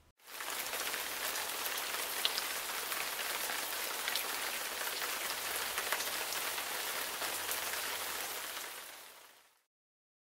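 Steady rain falling: an even hiss dotted with the ticks of single drops. It fades out about half a second before the end.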